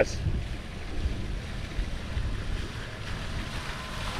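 Wind rumbling over the microphone of a camera carried on a moving bicycle, with a steady rushing hiss underneath.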